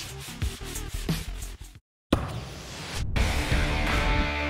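A hand pad rubbing back and forth over a truck's painted steel hood in a series of quick strokes. It cuts off into a moment of silence about two seconds in, and then music starts.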